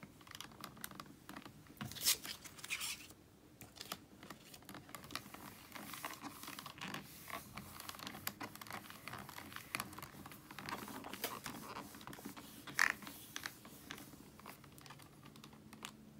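Small clicks, taps and paper rustles of a stamp being handled and pressed onto cardstock, with a couple of louder sharp clicks about two seconds in and near the end.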